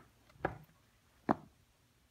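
Three short knocks, a little under a second apart, as leather sneakers with rubber soles shift on a wooden floor.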